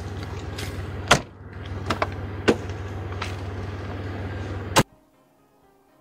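A car's engine running with a steady low hum while a few sharp knocks sound from the car. About five seconds in, a car door slams shut, the loudest sound, and the hum stops dead. Soft background music plays after it.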